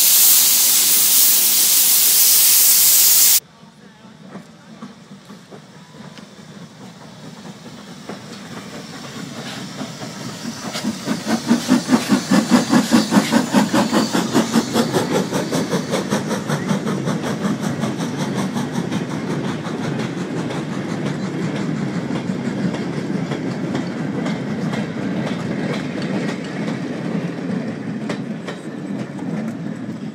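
Steam locomotive letting off a loud hiss of steam, which stops abruptly a few seconds in. Then a steam-hauled train rolls along the platform, its wheels clicking rhythmically over the rail joints. The train is loudest about midway and keeps on steadily as the coaches pass.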